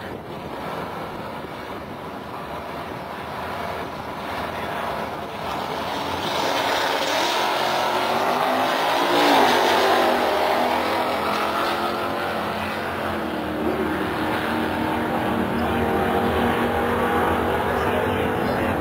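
Ford drag cars racing side by side down the strip at full throttle. The engine sound builds for several seconds, peaks with a rise and fall in pitch about nine to ten seconds in, then holds a steady engine note.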